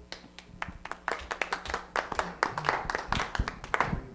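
A small group applauding: scattered, irregular hand claps that thicken about a second in and carry on through the rest.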